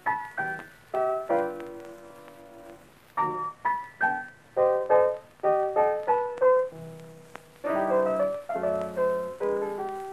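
Solo blues piano introduction on a 1932 recording: struck chords and short treble runs, each note dying away after it is struck, with a held note about seven seconds in followed by fuller chords.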